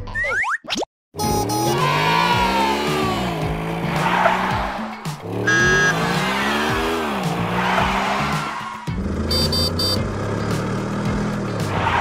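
Toy car engine sound effects: a revving engine that climbs and falls in pitch twice, with a short electronic beep about halfway through and a quick run of high chirps near the end.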